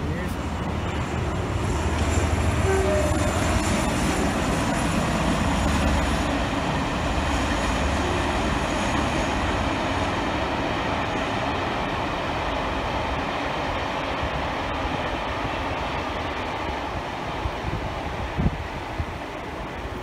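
Diesel-hauled charter train, coaches top-and-tailed by locomotives 57313 and 47826, passing along an embankment, loudest a few seconds in and then fading away. Under it runs the steady rush of a swollen river in the foreground.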